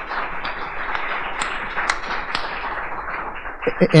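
An audience applauding, many hands clapping in a dense, steady patter that is fading just before a man's voice comes in near the end.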